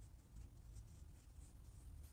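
Near silence with faint, soft strokes of a makeup brush brushed across the cheek, over a low room hum.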